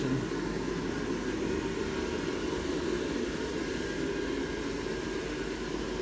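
The built-in electric blower fan of a 10-foot Gemmy airblown praying mantis inflatable running steadily and keeping the figure inflated: an even rushing hum of air, strongest in the low range.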